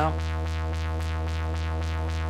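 Doepfer A-100 analog modular synthesizer sounding a simple, steady low drone rich in harmonics, left running after a patch cable is pulled.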